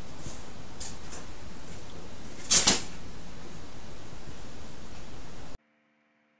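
Steady background hiss with a few faint clicks and one short clatter about two and a half seconds in, which is the loudest sound; everything cuts out suddenly near the end.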